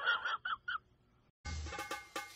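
A quick run of about six short, evenly spaced pitched calls that stops under a second in; after a brief silence, music starts.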